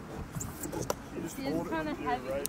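A person's voice speaking briefly, low, in the second half, with a few faint clicks scattered through.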